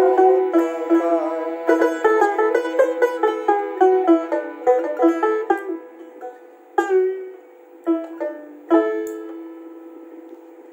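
Dotara, the long-necked Bengali folk lute, played solo: a quick run of plucked notes, then four spaced single notes that ring and fade away, closing the song.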